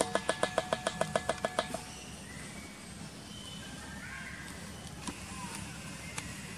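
A rapid run of about a dozen electronic beeps, some seven a second, lasting under two seconds, then only faint outdoor background.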